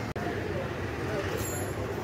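Steady vehicle and traffic noise with an even background hum and no clear voice in front.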